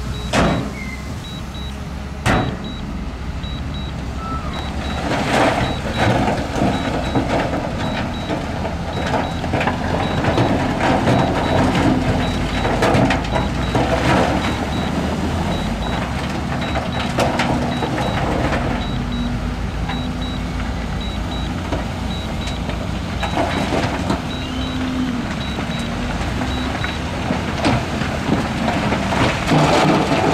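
Heavy diesel machinery working: a dump truck and a wheel loader run steadily, and loose rock clatters and rumbles as it slides off the tipped truck bed. A faint high reversing alarm beeps at an even pace through most of it.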